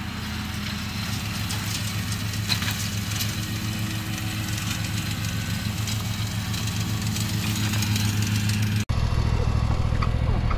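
Zero-turn mower engine running at a steady speed. Near the end the sound cuts out for an instant, then comes back a little louder.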